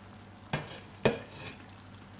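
Vegetable tagine simmering in an uncovered clay tagine, a steady sizzling hiss, broken by two sharp knocks about half a second apart.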